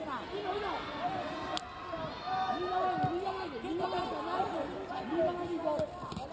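Untranscribed voices calling out in a large arena hall, steady through the whole stretch, with a single sharp knock about one and a half seconds in.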